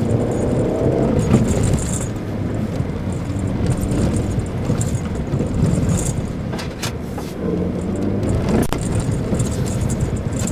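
Mitsubishi Pajero Mini heard from inside the cabin, driving on a snow-covered dirt road. The engine pitch rises as it pulls, about a second in and again near the end, over steady tyre and road rumble, with a few sharp rattles and clicks from the cabin.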